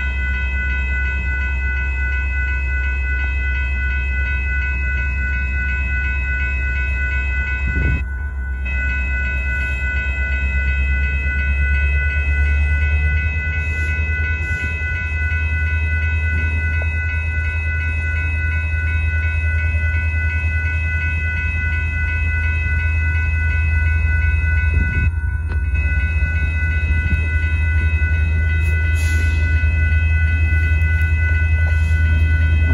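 Railroad crossing warning bell ringing steadily over the deep rumble of a Union Pacific freight train's diesel locomotives nearing the crossing. The sound briefly drops out twice.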